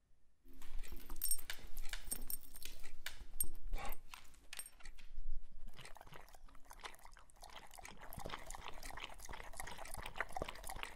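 A dog eating and lapping from a cup, with small wet chewing and slurping sounds in the second half. Before that comes a run of sharp clicks and knocks.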